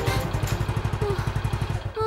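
Motorcycle engine idling with a quick, even putter.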